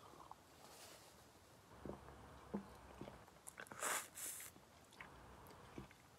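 Faint sipping and swallowing of beer from a glass, with a few soft mouth clicks about two to three seconds in, then a short breathy rush about four seconds in.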